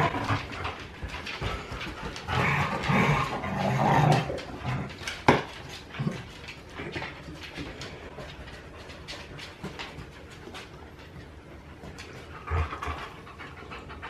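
Dogs panting and snuffling as they play close together, with claws clicking on a wooden floor. The sound is louder about two to four seconds in, with a sharp knock about five seconds in.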